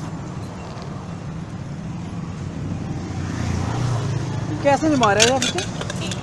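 Steady low street-traffic hum, with a high-pitched voice speaking briefly near the end.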